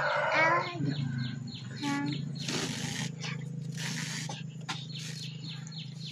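A rooster crowing in the background, its crow trailing off about half a second in, then a short call about two seconds in, over a steady low hum. Two brief rustles of polyester yarn cord being handled around the third and fourth seconds.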